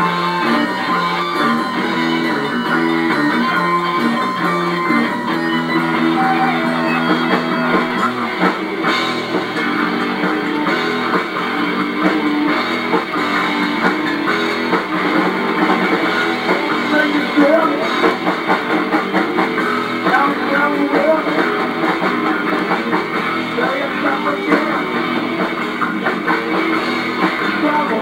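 Rock band playing live: electric guitars over drums and bass, with a change in the low part about eight seconds in.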